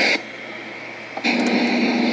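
Loud hiss from a recording of a court hearing played back over loudspeakers. The hiss drops away just after the start and comes back about a second and a quarter in, with a low steady hum under it.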